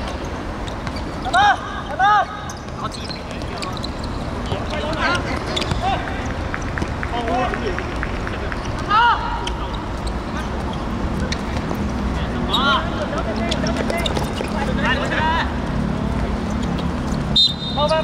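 Footballers shouting short calls across the pitch over steady outdoor background noise; the loudest shouts come about a second and a half and two seconds in, another around nine seconds, and one near the end.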